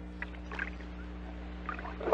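Faint splashing water, a few scattered irregular splashes, over a steady low hum on the record, after the music has faded out.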